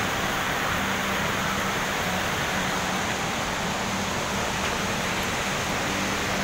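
Steady rushing roar of Bomburu Ella waterfall, white water pouring over rocks.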